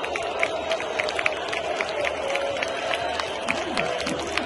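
Football crowd in a stadium singing a chant together, with many scattered hand claps over the singing.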